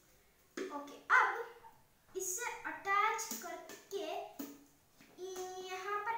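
A boy talking in short bursts, with one short, loud sound about a second in.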